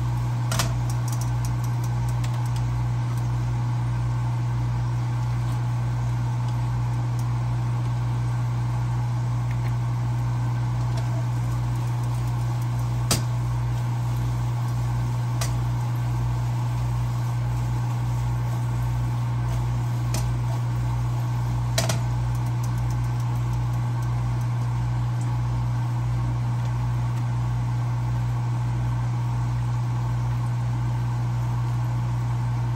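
A steady low machine hum runs throughout at an even level, with a slow throb beneath it. Three brief sharp clicks stand out: about half a second in, about thirteen seconds in, and about twenty-two seconds in.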